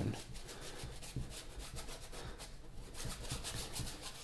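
Paintbrush scrubbing thin acrylic paint onto a canvas in quick repeated back-and-forth strokes, a dry rubbing sound.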